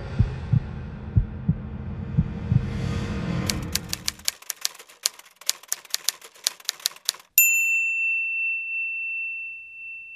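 Intro sound effects: low double thumps about once a second under a swelling noise, then a quick run of typewriter key clacks, about six or seven a second, ending in a single typewriter bell ding that rings on as a steady high tone.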